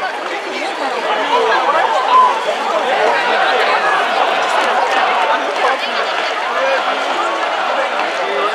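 Ballpark crowd in the stands: many overlapping voices chattering at a steady, fairly loud level.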